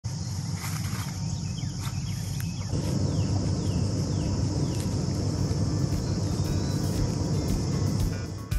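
Outdoor pasture ambience: a steady high insect drone over a low rumble, with four short falling bird chirps between about three and five seconds in.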